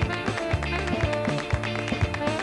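Live band playing an up-tempo Latin number in a passage without vocals: a saxophone over a steady bass line, with a quick, even beat of sharp percussive hits, about four a second.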